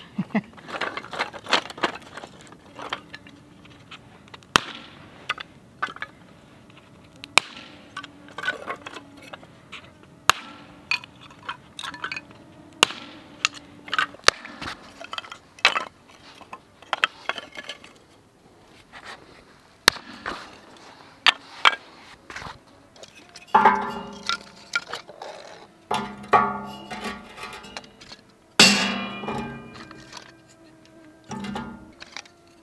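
Split wooden kindling sticks clacking and knocking together as they are handled, many sharp separate knocks. Near the end, louder clattering bursts with a ringing clink as sticks are laid into the stainless steel fire pit.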